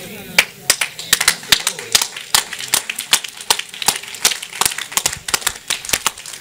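Scattered applause from a small congregation: a few people clapping irregularly, several claps a second, with faint voices under it.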